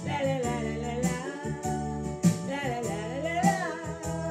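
A woman singing a Tamil song, accompanied on an electronic keyboard with sustained chords, a bass line and a steady drum beat.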